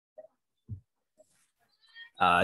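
Mostly near silence, broken by four faint, brief voice-like sounds about half a second apart.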